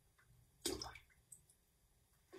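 A small dish scooping liquid from a bucket of worm-casting tea: one brief slosh of liquid a little over half a second in, followed by a faint tick.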